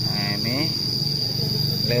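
Insects keeping up a steady, unbroken high-pitched drone.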